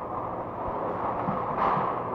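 Steady background noise of an old interview recording, heard in a pause between words, with a brief soft swell about one and a half seconds in.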